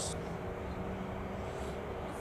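Steady low background hum of room noise with faint constant tones and no distinct events.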